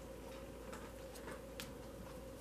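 Faint, irregular soft clicks of tarot cards being handled and laid down on a cloth-covered table, over a steady low hum.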